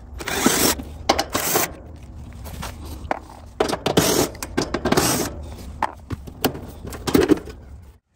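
Cordless drill/driver backing out the sheet-metal screws on an outdoor air-conditioner condenser's service panel, running in several short bursts with metal scraping and rattling, over a steady low hum.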